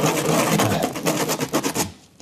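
Rapid scraping as the sawn end of a plastic tube is rubbed against an abrasive sheet to take off the burrs left by the hacksaw. It stops suddenly near the end.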